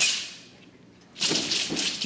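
A thin, flexible wushu broadsword blade cracking sharply as it is whipped, fading over about half a second, followed about a second later by a longer, louder stretch of rattling and swishing as the sword is swung again.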